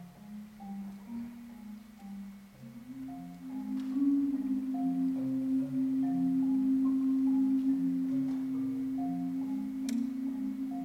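Marimbas playing a passage of short mallet notes, a repeating higher pattern over a slowly stepping low line. About three seconds in, a long held low note comes in and the music grows louder.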